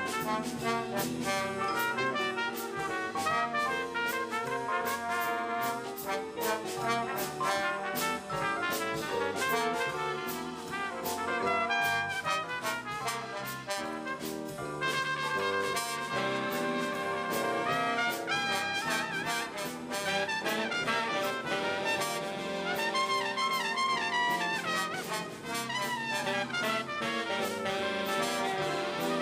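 Jazz big band playing, with a trumpet out front over trombones and the rest of the band.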